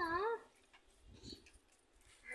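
A short, high, wavering whine lasting about half a second at the start, its pitch going up and down twice.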